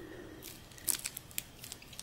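Faint crinkling of foil-faced Reflectix bubble insulation as a small strip is folded over and pressed between the fingers, with a few small crackles about a second in.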